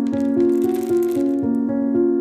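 Piano background music, with a brief hissing rattle of many small loose diamonds pouring onto a cloth for about the first second and a half.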